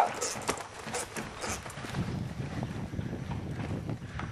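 Metal spur rowels rolled along a horse's side and belly, giving several short high zings in the first second and a half, with wind rumble on the microphone. The rider uses the spur this way to make the mare move off his leg when she gets stuck.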